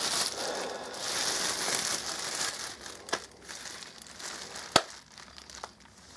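Clear plastic packaging bag crinkling and rustling as it is handled, loudest in the first half. Two sharp clicks follow, one about three seconds in and a louder one near five seconds.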